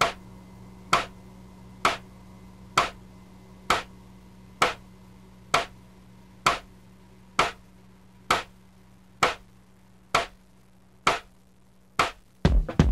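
Sharp clicks in a slow, even beat, about one a second, over a faint low hum that fades away, keeping time before the song's music comes in.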